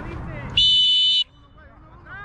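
A referee's whistle: one short, loud, steady blast lasting well under a second, starting about half a second in.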